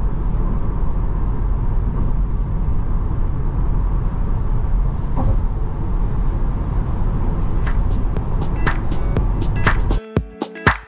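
Steady low road and tyre rumble inside the cabin of a Tesla Model 3 Performance, an electric car with no engine note, cruising at highway speed. In the last two seconds or so, music with sharp percussive clicks fades in over it.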